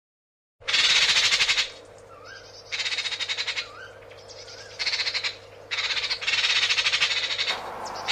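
Magpie chattering: harsh, rapid rattles in repeated spells of about a second each, with soft rising chirps in the gaps, over a faint steady hum.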